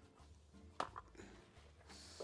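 Near silence: faint room tone with two light clicks or knocks about a second in.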